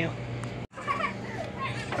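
A young child's faint, high-pitched voice and distant talk over a steady low hum, with the sound cutting out abruptly for an instant just under a second in.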